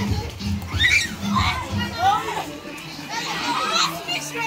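Children shouting and calling out at play, with high shouts rising and falling, over background music with a steady beat that drops away about halfway through.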